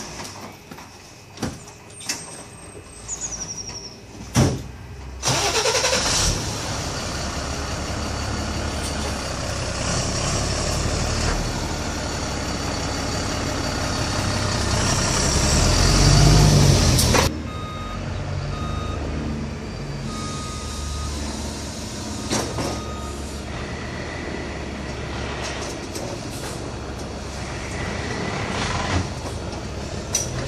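JLG 2630ES battery-electric scissor lift lowering its platform: a loud rushing noise from about five seconds in that cuts off suddenly at about seventeen seconds, then quieter running with a few short, high beeps.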